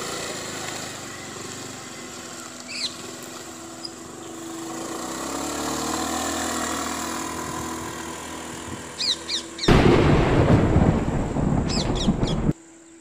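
Small motor scooter engine running as it rides off, with birds chirping now and then. About ten seconds in, a sudden loud burst of low, rushing noise breaks in and carries to the end.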